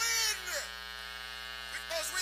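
A man singing into a microphone through a public-address system, over a steady electrical buzz from the sound system. His note falls away about half a second in, leaving only the buzz, and his voice comes back near the end.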